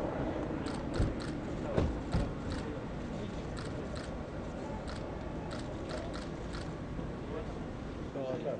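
Press photographers' camera shutters clicking repeatedly in irregular bursts, with a couple of low thumps in the first two seconds.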